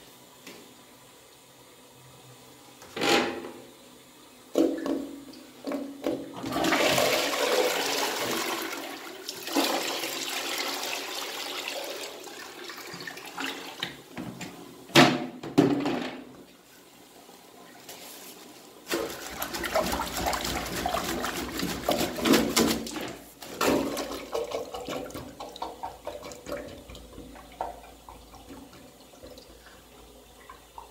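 Toilet flushing into a partly blocked bowl: water rushes in for several seconds, starting a few seconds in. A few knocks follow, then a second, longer stretch of water noise.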